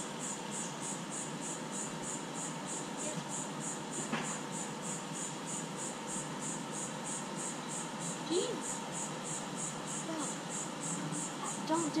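An insect chirping in a steady, even rhythm of about three to four high chirps a second, with faint voices in the background.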